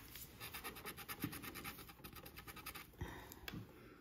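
A handheld scratcher tool scraping the coating off a lottery scratch-off ticket in quick, even back-and-forth strokes. The strokes run for about three seconds, then grow fainter near the end.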